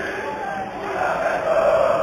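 Football crowd of home supporters chanting in the stands, a mass of voices that swells louder in the second half.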